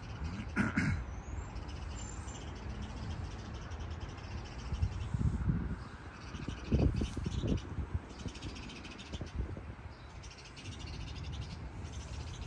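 Outdoor ambience of low wind rumble on the microphone, gusting louder a few times, with a crow cawing near the start.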